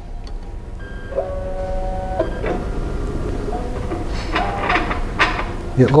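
BioTek BioStack plate stacker's motors moving a microplate out and lowering it into the ELx405 washer, just after the run is started. A steady motor whine starts about a second in and holds for about a second, then shorter whines at other pitches and a few clicks follow as each move starts and stops, over a low hum.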